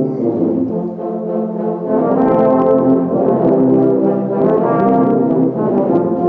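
A massed tuba and euphonium ensemble playing a Christmas piece in held chords. About two seconds in, the low voices come in and the sound grows fuller and slightly louder.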